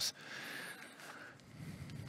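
Faint ambience of an indoor sports hall falling hushed before a sprint start: a low, even murmur and hiss.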